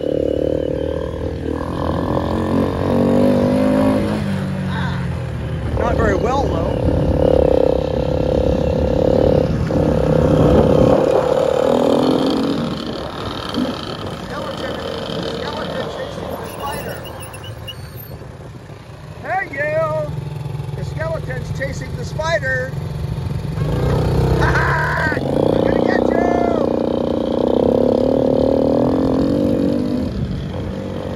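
ATV engines running in a field. The nearest engine, on the quad carrying the camera, rises in pitch and settles several times as the throttle is worked, and eases off briefly a little past halfway.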